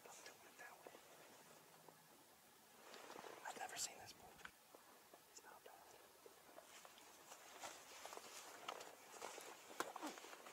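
Near silence with faint whispering voices, breathy and low, in two short stretches a few seconds in and again near the end.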